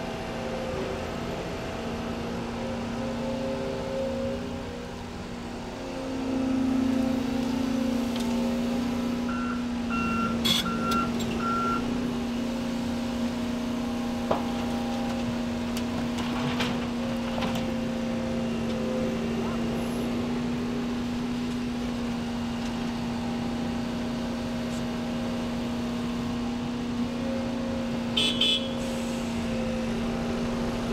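Volvo EC 300E excavator's diesel engine and hydraulics working steadily under load as it digs and swings soil over to a dump truck. The engine note rises about six seconds in. A run of four short high beeps comes near ten seconds in, and a few metal clanks follow, the loudest pair near the end.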